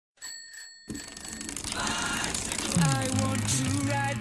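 Two quick rings of a small bell, then intro jingle music that swells in and builds, with a bass note sliding down about three seconds in.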